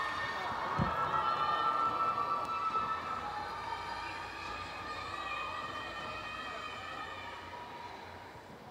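Crowd cheering, with many long high-pitched shouts that die away over the seconds as the team takes its places. A single low thump sounds about a second in.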